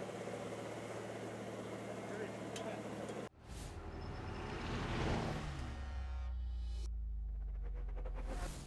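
A steady low hum that cuts off abruptly about three seconds in. An outro logo sting follows: a deep bass swell with a swooshing sweep that peaks about five seconds in, then settles into a held low drone.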